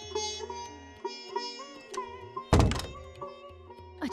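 Background music of plucked-string melody notes bending in pitch over a steady drone. About two and a half seconds in, a single loud thud.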